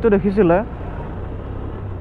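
Honda motorcycle running at a steady cruise, a low, even engine hum with road and wind noise once the rider's voice stops, under a second in.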